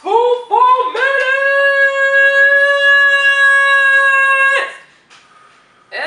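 A high voice singing: two short notes that scoop upward, then one long held note of about three and a half seconds that stops abruptly.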